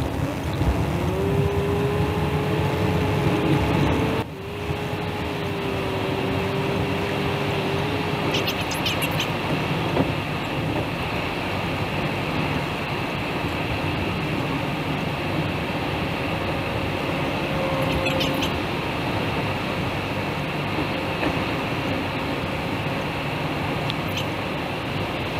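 Steady road and engine noise heard inside a car travelling on a highway, with a sustained hum note over the first several seconds and a sudden brief drop about four seconds in.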